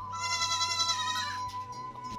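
A goat bleats once, a wavering call a little over a second long, over steady background music.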